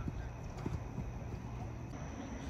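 Steady outdoor background noise with a few soft knocks in the first second, under faint distant voices.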